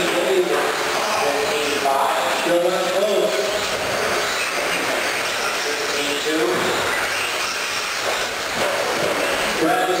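Electric 2WD R/C stadium trucks running on an indoor dirt track: a steady mix of motor and tyre noise, with people's voices in the hall.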